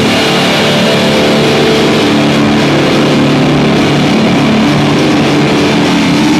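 Live death metal band playing at full volume: heavily distorted electric guitars and bass holding low notes over drums, loud enough to overload the recording into a dense, unbroken wall of sound.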